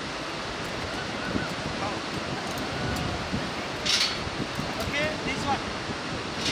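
Steady rushing noise of the Bhote Koshi river's whitewater and wind, with faint distant voices and a brief hiss about four seconds in.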